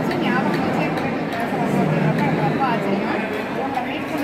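Several people talking over one another in a room, a steady babble of voices.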